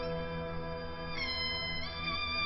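Orchestral music: harp notes ring on, then about a second in a jinghu enters with a bright, nasal held note that steps up in pitch near the end.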